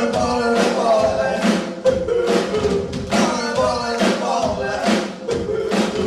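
Melodic hard rock band playing live: a sung melody over a steady drum beat of about two strikes a second, with guitars filling out the sound.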